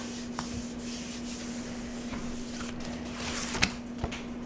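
Hands rubbing the back of a sheet of paper pressed onto a gel printing plate, a steady dry rubbing, with a sharp click near the end.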